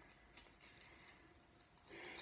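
Near silence, with a couple of faint short ticks from satsuma rind being pulled off by hand.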